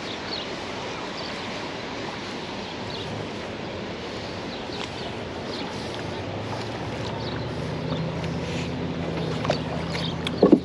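Steady outdoor rushing noise of wind and moving water, with a low motor hum coming in about six and a half seconds in.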